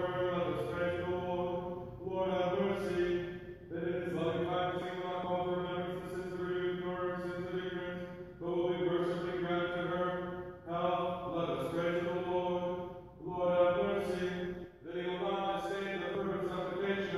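A male voice chanting liturgical prayers on a mostly level reciting tone, in phrases of a few seconds with short breaks between them.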